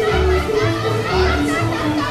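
Live string band with fiddle playing a dance tune with a steady bass beat, over the voices of a hall full of dancers.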